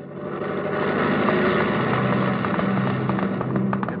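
Sound effect of a propeller airplane's engine running up for takeoff. It rises over the first second and then drones steadily.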